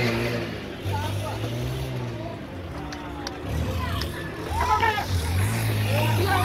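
A motor vehicle engine running steadily at low revs, with a short break about a second in, under people shouting in the street, including a shout of "Go" at the start and louder calls about five seconds in.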